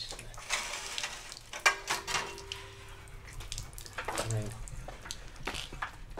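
Water trickling and hissing from a wet-cutting tile saw's water feed, with sharp clicks and knocks of the saw being handled on its guide rail. A short bit of voice about four seconds in.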